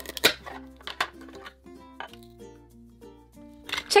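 Toy knife cutting a Velcro-joined plastic toy strawberry: a short ripping crackle near the start as the Velcro halves part, then a few light plastic clicks and taps on the toy cutting board. Background music plays throughout.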